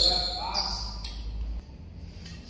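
A badminton racket strikes a shuttlecock once, sharply, at the start, ringing in a large hall, followed by brief high-pitched squeaks of court shoes.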